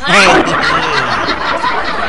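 Loud laughter breaking out suddenly and carrying on.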